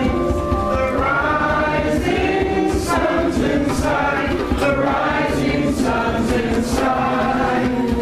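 A group of people singing together, many voices carrying the melody in long held notes at a steady level.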